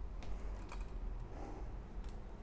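A few faint, scattered clicks over a low steady hum.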